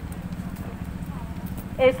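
A steady low, rapidly pulsing rumble, like an idling engine, with faint distant voices. Near the end, a woman's voice starts loud through the street-speech microphone and loudspeaker.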